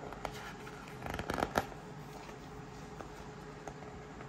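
A page of a paperback sticker book being turned: a short burst of paper rustling and flapping, starting about a second in and loudest about a second and a half in.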